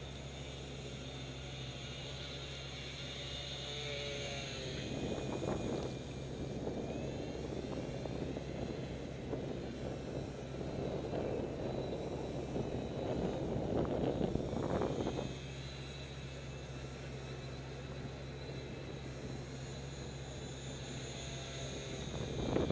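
Faint whine of a UMX Beast micro RC plane's electric motor, rising and falling in pitch as the throttle changes in flight. Gusty wind rumbles on the microphone through the middle stretch, then eases off.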